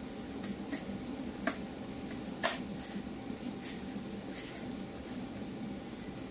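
Short plastic clicks and taps from a cordless handheld vacuum's clear dust container being handled and fitted back on, about seven in all, the sharpest about two and a half seconds in. The vacuum motor is not running.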